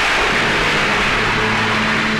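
A loud noisy crash in the film's background score, like a struck tam-tam or cymbal, starting suddenly and fading slowly over a low held note.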